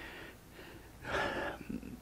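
A man's single audible breath, lasting about half a second, about a second in, with quiet room tone around it.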